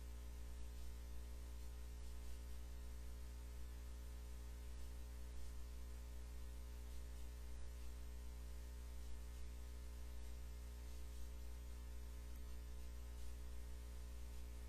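Steady electrical mains hum with a stack of buzzy overtones and a faint hiss, unchanging throughout.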